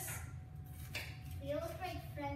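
A kitchen knife cutting a bell pepper into strips on a cutting board: a couple of short cuts, one near the start and one about a second in, over a steady low hum, with a voice speaking softly in the second half.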